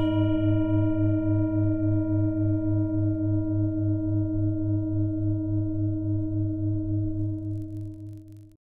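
A single struck bell rings on and slowly fades, its low tone pulsing in a steady beat about four times a second, dying away near the end.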